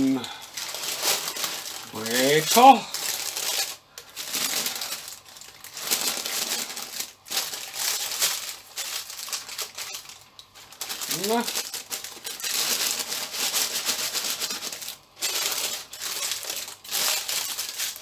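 Baking paper crinkling and rustling in irregular bursts as it is handled and folded by hand.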